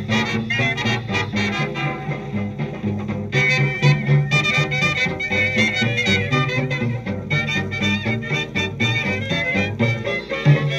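1932 swing dance-band record playing: a brass and saxophone ensemble with trumpets prominent, over a rhythm section of piano, banjo, bass and drums keeping a steady beat.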